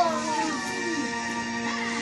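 Background music from a children's cartoon playing on a television: held notes, with a few sliding, gliding sounds over them.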